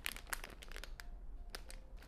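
Glossy plastic snack packet crinkling and crackling in the hands as it is held up and moved about, in short irregular crackles.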